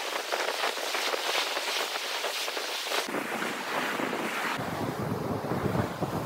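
Surf washing onto a beach, with wind buffeting the microphone; a low wind rumble comes in about halfway through and grows heavier near the end.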